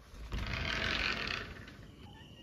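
A door opened by its lever handle, making a rushing scrape that lasts about a second.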